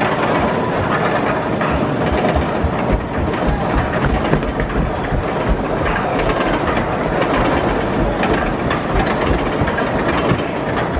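Arrow Dynamics mine train coaster's train running along its tubular steel track: a steady rumble with a rapid, continuous clatter.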